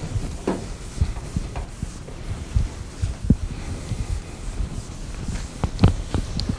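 Felt eraser wiping a chalkboard in quick irregular strokes, heard as low rubbing thumps and scrapes, the strongest stroke near the end.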